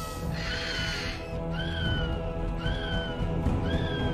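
Baby dragons' shrill cries, a screen sound effect: four short arching calls about a second apart, over a sustained orchestral score.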